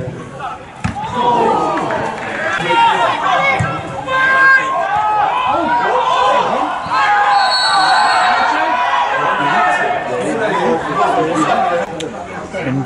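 Several footballers shouting and calling to one another at once during an attack in front of goal, with a couple of sharp thuds from the ball being struck early on.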